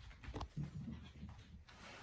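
Kittens play-fighting on a tatami mat: faint scuffling with a light knock about half a second in.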